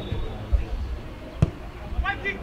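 A football kicked: one sharp thud about one and a half seconds in, with a duller low thump about half a second in.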